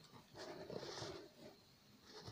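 An elderly man's faint breathing sound as he lies in bed, lasting about a second.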